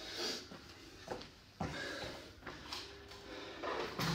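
An electric fan switched on with a click about one and a half seconds in, then running steadily, with heavy breathing after exercise.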